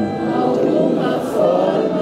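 Many voices singing a love song together, an audience singing along, over grand piano accompaniment.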